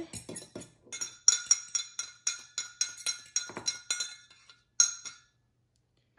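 Metal fork clinking against the sides of a glass Pyrex measuring cup while stirring gelatin into water: quick ringing clinks about three a second, stopping about five seconds in.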